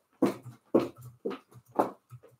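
Footsteps of heeled shoes on a tiled floor, four even steps about two a second.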